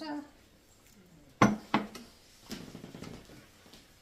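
Two sharp knocks of a wooden fruit bowl of apples being set down on a hard marble tabletop, about a second and a half in, the first louder.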